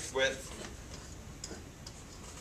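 A pen squeaking briefly against a whiteboard in a short stroke right at the start, followed by a few faint taps over steady room hum.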